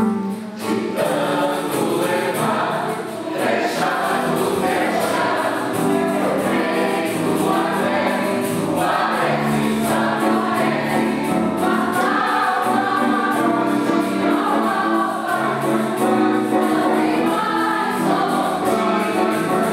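Mixed choir of women's and men's voices singing together under a conductor, the voices held in steady sustained chords with only a brief dip in loudness just after the start.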